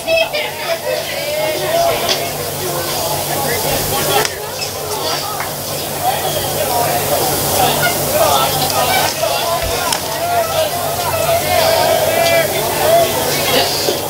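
Indistinct chatter of spectators' voices at a baseball game, over a steady hiss, with one short click about four seconds in.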